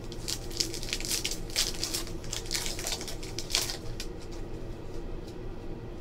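A trading-card pack being opened and its cards handled: a run of crinkling rustles and clicks from the wrapper and cards, busiest in the first four seconds, over a steady low room hum.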